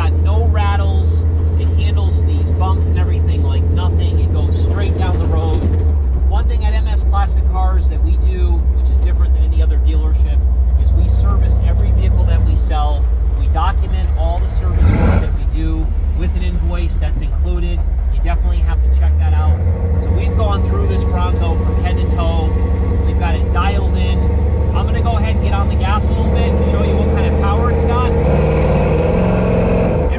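Custom 1976 Ford Bronco's 351 Windsor V8 running as the truck drives around, heard from outside the vehicle, with a deep steady rumble. It comes close and passes by about halfway through.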